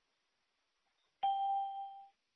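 Near silence, then a little over a second in a single bell-like chime starts suddenly on one clear pitch and fades away.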